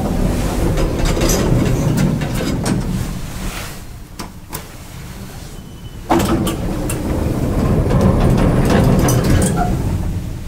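A 1982 Schindler traction elevator car in travel, with the up arrow lit: a loud, steady, noisy ride sound with scattered clicks. It eases off midway and comes back suddenly about six seconds in.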